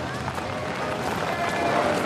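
Outdoor crowd bustle: indistinct chatter of many voices with general movement noise, no clear words.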